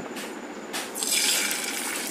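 Beaten egg poured onto hot oil in a ridged grill pan, with a hiss of sizzling that sets in about a second in and carries on steadily.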